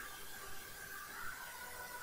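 Faint steady hiss with a faint, thin hum: the background noise of the recording between spoken phrases.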